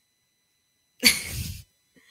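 A single sudden, sharp burst of breath noise from a person, like a sneeze, about a second in, lasting about half a second.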